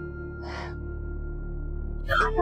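Soft drama background score of steady held tones, with one short breathy intake of breath about half a second in.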